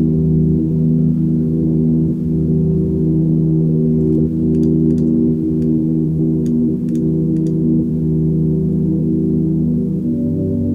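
Half-speed cassette playback from a C1 Library of Congress player: a low, sustained drone of several steady tones held as one chord, with a few faint ticks above it. Two takes of the same tape recording play together, one panned hard left and one hard right.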